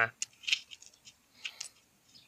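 A small plastic toy figure scraped and tapped on a concrete surface: a few short, faint scratchy noises.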